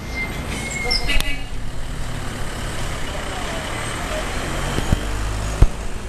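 Street noise led by a motor vehicle engine running with a steady low rumble, with faint voices in the background. Two sharp knocks come near the end; the second is the loudest sound.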